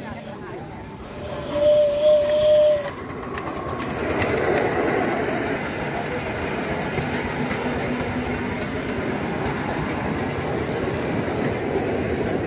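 Miniature live-steam locomotive's whistle gives one steady blast of about a second and a half, starting about a second in. After it comes the steady rumble of the miniature train running along the rails.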